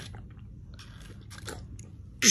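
Toddler drinking water through the straw of a plastic sippy cup: faint sucking, swallowing and lip-smacking clicks.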